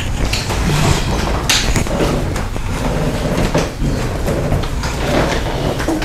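Handling noise from a clip-on lavalier microphone as it is unclipped and passed by hand: irregular rubbing, bumps and knocks of the mic and its cord against hands and clothing, over a steady low rumble.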